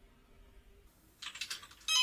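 Quiet at first, then a computer keyboard being typed on in short irregular clicks from a little past halfway. Right at the end a desk telephone starts ringing.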